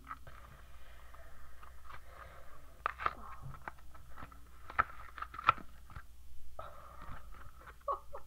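Card-and-plastic blister packaging crackling and snapping as it is pulled apart by hand to free a toy phone, with a string of sharp clicks, the loudest about three and five seconds in.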